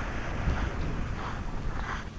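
Wind buffeting the microphone as a steady low rumble, with faint crunching of footsteps on shingle pebbles and the hiss of sea on the beach underneath.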